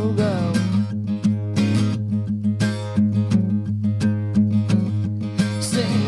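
Acoustic guitar strummed in a steady rhythm, playing the instrumental bridge between sung lines of an acoustic rock song; the tail of a sung note fades out just after the start.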